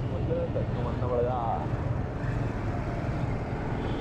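Small single-cylinder engine of a TVS two-wheeler running steadily while riding, with road and wind noise. Faint voices come through around a second in.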